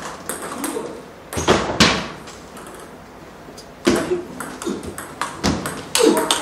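Table tennis ball being served and returned in a short rally: sharp clicks of the plastic ball off the paddles and bouncing on the tabletop, irregularly spaced. The loudest hits come a little under two seconds in and about four seconds in.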